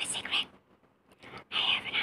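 A woman whispering close to the microphone in two short bursts, one at the start and one about one and a half seconds in, with a near-silent gap between.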